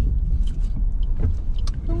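Steady low rumble of a car's engine and tyres heard from inside the cabin while driving, with a few faint ticks.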